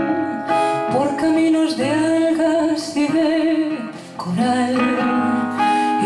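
A zamba performed by a woman singing, accompanied by acoustic guitar, with held, sliding sung notes.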